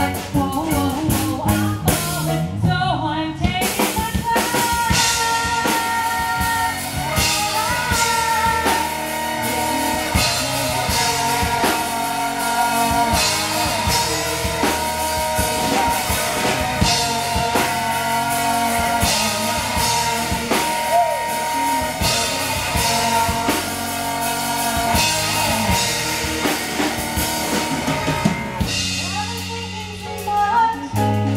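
Live rock band playing: drum kit, electric guitar and bass guitar, with a singer over them.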